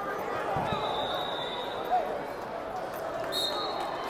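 Crowd chatter in a large gymnasium, many voices talking at once, with a dull thump about half a second in and a faint, steady high tone lasting about a second.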